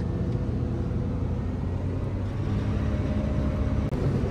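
Self-propelled forage harvester running while chopping standing corn for silage, heard from inside its cab as a steady low rumble.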